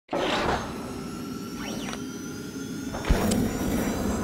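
Sound design for an animated logo intro: a swelling whoosh, gliding sweeps and sustained synthetic tones, then a sharp low hit with a bright chime a little after three seconds.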